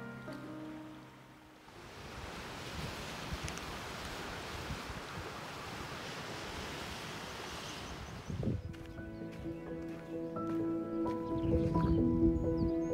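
Steady rush of sea waves and wind by the shore for about six seconds, between two pieces of background music: a piano piece dying away at the start and a new piece starting about eight seconds in.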